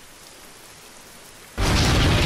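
Steady rain falling, then about one and a half seconds in a sudden, very loud boom with a deep low end that carries on.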